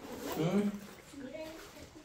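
Soft speech: two short murmured phrases, quieter than the talk around them.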